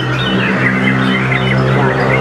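Songbirds singing in quick, sharp chirps and short trills, a caged white-rumped shama (murai batu) among them, over a steady low hum.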